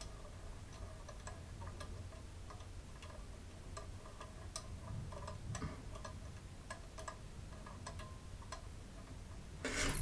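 Faint, irregular light ticks, one or two a second, over quiet room tone, while a small metal divining pendulum swings over a yes/no board.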